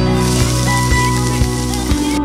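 A frying sizzle sound effect, a steady hiss like vegetables hitting a hot pan, lasting about two seconds over background music.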